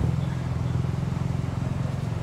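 A motor engine running steadily, a low, even rumble.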